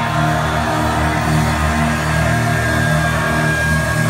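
Live hard rock band playing loud through the venue PA, with electric guitars and bass holding steady, sustained notes near the end of a song.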